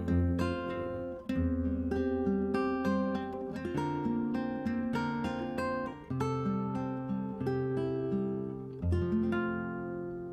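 Instrumental close of a song: acoustic guitar picking and strumming chords, beginning to fade out near the end.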